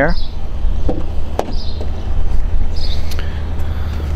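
Car door latch clicking sharply once as the driver's door of a Range Rover Sport is opened, over a steady low rumble.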